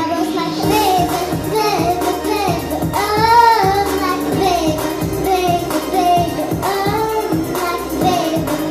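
A child singing karaoke into a microphone over a recorded backing track.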